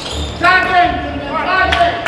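Two shouted calls on a basketball court, about a second apart, with a basketball bouncing on the gym floor.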